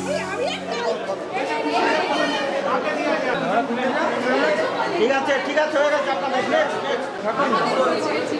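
Many people talking at once: indistinct, overlapping chatter of a group of adults and children, with no single clear voice. The tail of a music track fades out in the first second.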